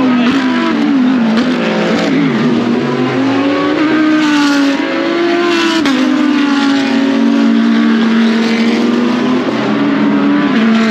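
GT race cars passing one after another at reduced pace in a queue behind the pace car. Several engine notes overlap, rising and falling in pitch.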